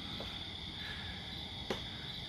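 Crickets chirping in a steady, continuous high-pitched trill, with a single sharp click about one and a half seconds in.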